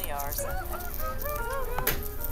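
A cartoon character's voice wavering up and down in pitch in short wordless sounds, with a sharp click near the end.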